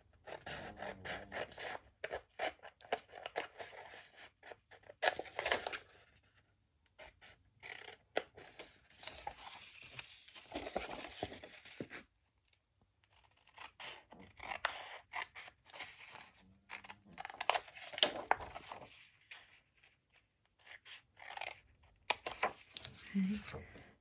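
Scissors snipping through scored 12x12 scrapbook paper, many short, crisp cuts in three runs with brief pauses between.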